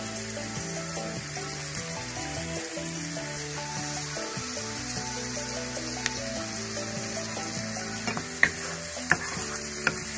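Sliced onions sizzling steadily as they fry in coconut oil in a wok, over background music. Near the end a wooden spatula knocks against the pan a few times as stirring begins.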